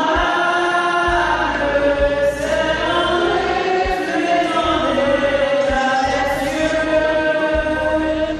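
A choir singing a hymn, many voices holding long notes that change pitch every second or so.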